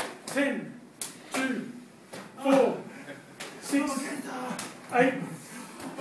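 Bare-fist karate body punches landing on a gi-clad torso in a steady series, about one a second, each sharp smack followed by a short shouted call, like the count that runs just before.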